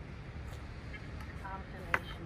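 Steady low outdoor rumble, with a faint short voice about one and a half seconds in and a single sharp click just before the end.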